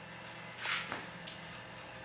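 Steady low hum of the running Clavilux light organ's motor and lamp, with a short hissy rustle about two-thirds of a second in and a faint click or two.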